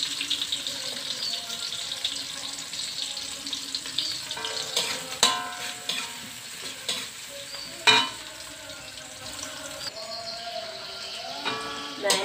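Chopped chillies, garlic, shallots and petai beans with ground dried shrimp sizzling in hot oil in a metal wok while a metal spatula stirs and scrapes them; a few sharp clanks of the spatula on the wok, the loudest about 8 seconds in. The spice base is being sautéed until fragrant.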